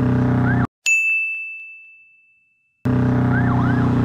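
A motorcycle engine runs steadily at road speed, with a short rising-and-falling siren whoop. The sound then cuts out abruptly, and a single bell-like ding rings and fades for nearly two seconds over silence. About three seconds in, the engine returns with two more quick police-siren whoops.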